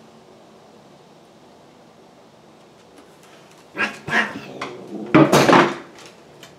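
Two long-haired cats scuffling on a tile floor: after a quiet start, loud noisy bursts of tussling come about four seconds in, with the loudest near the end.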